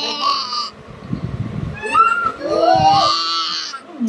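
A boy making silly high-pitched, bleating vocal noises in two drawn-out bursts, the second one longer.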